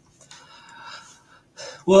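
A man's faint audible in-breath lasting about a second, taken just before he starts speaking, then the start of his answer near the end.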